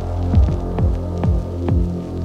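Experimental electronic (IDM) music: a deep sustained bass drone with kick drums that drop in pitch, about two a second, and light clicks above.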